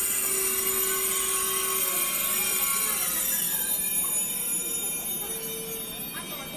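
KTX high-speed train pulling into a platform and slowing, with a high-pitched squeal from its wheels and brakes that eases off near the end.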